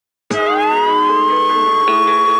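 A siren-like tone starts sharply a moment in, rising in pitch and then holding steady, over a sustained synth chord at the start of a song's music track.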